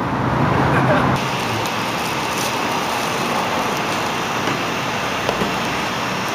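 Steady rushing background noise, with its character shifting a little over a second in.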